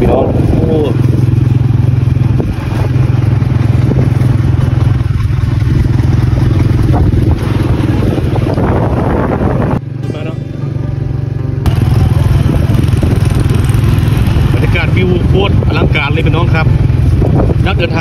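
Steady drone of a motor vehicle travelling along a road, engine and road noise, with a short dip and change in the sound about ten seconds in.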